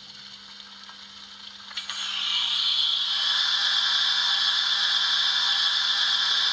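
Sound decoder of a Märklin 39009 H0 model of a DB class 01 steam locomotive playing its injector sound through the model's loudspeaker. A steady steam hiss swells in about two seconds in and then holds.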